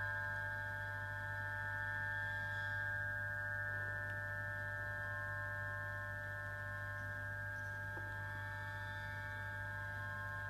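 Experimental live-music drone: a cluster of several steady, ringing high tones held over a low hum, barely changing.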